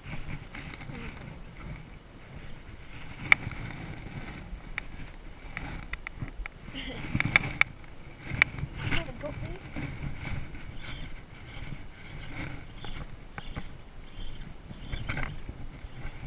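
Jacket fabric rustling and rubbing over a chest-worn camera's microphone as an angler handles a baitcasting rod and reel, with scattered sharp clicks and knocks; the sharpest click comes about three seconds in and a cluster of clicks falls around the middle.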